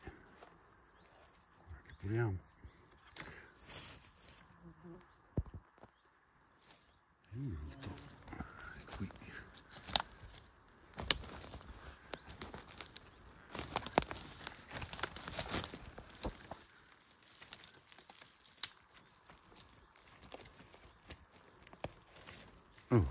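Dry leaves and twigs on the forest floor crackling and rustling as someone moves and handles things in the undergrowth. It comes as scattered sharp crackles, busiest in the middle stretch.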